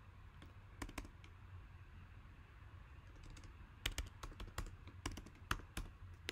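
Irregular light clicks and taps from hands working on a camera setup: a few about a second in, then a quicker, louder run in the second half.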